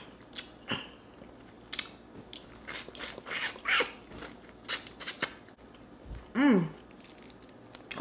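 Close-up mouth sounds of someone chewing and gnawing meat off a cooked turkey neck bone: a string of irregular wet smacks, lip clicks and small crunches. About six and a half seconds in, a short hummed "mm" falls in pitch.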